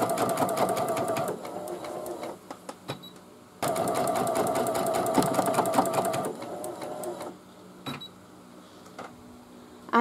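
Computerized embroidery machine stitching an applique placement line: a steady motor hum with rapid ticking needle strokes. It fades out, then starts again abruptly about three and a half seconds in, and stops a little after six seconds in, leaving a low background with one click near the end.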